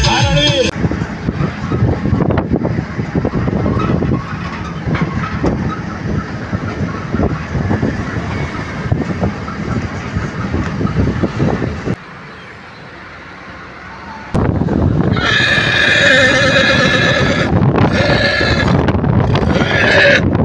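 A horse whinnying near the end: two long, quavering calls, the first longer than the second, over steady wind and road noise. Before that, a noisy stretch with music cutting off under a second in.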